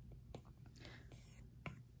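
A handful of faint taps of an Apple Pencil's plastic tip on the iPad's glass screen, with a light brushing sound between them, as speckles are dabbed on with a spray-paint brush.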